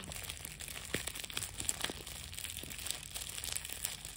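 Clear plastic shrink wrap crinkling as it is peeled off a product box and crumpled in the hand: a continuous dense crackle of small sharp clicks.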